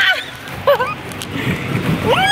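High-pitched squeals of laughter from people playing in a ball pit: a squeal trails off at the start and a short squeaky one comes about two-thirds of a second in.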